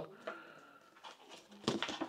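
A quiet pause in a small room. Near the end, a sheet of paper rustles faintly as it is handled.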